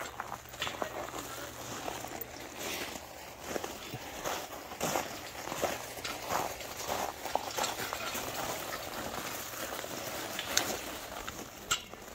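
Steel-mesh utility cart rolled over crushed rock gravel: the wheels and footsteps crunch steadily, with irregular clicks and knocks from the stones and the cart.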